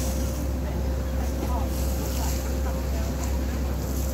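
Passenger ferry's engine running with a steady low drone and a thin steady hum above it, over an even wash of water and wind noise.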